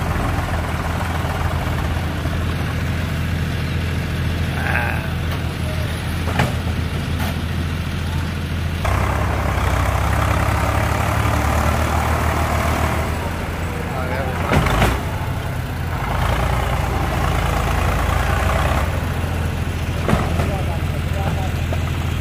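Eicher 485 tractor's diesel engine running hard under load as it strains to pull a heavily loaded brick trolley, front end rearing up; the engine note swells about nine seconds in and eases and rises again several times. A sharp knock sounds a little before fifteen seconds.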